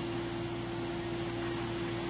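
Steady background hiss with a constant low hum from an open outdoor microphone, with no speech.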